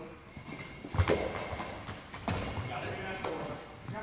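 A goalball with bells inside bouncing twice on a hardwood gym floor and jingling as it travels between the thuds. Voices murmur in the hall.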